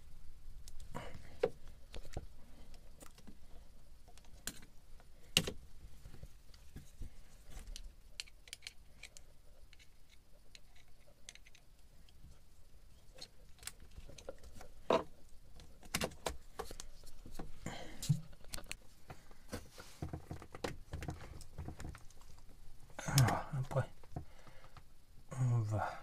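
Irregular light clicks and knocks of a screwdriver and hands working on hose clamps and hoses, with a few sharper knocks spread through.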